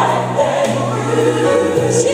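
Gospel worship music: a choir singing over steady, sustained low accompaniment.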